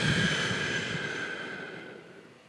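A man breathing out slowly into a close microphone: a long, breathy hiss that fades away over about two seconds. It is the out-breath of a box-breathing demonstration.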